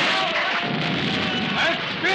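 Battle sound effects from a film soundtrack: a steady din of rifle fire and explosions, with a shouting voice near the end.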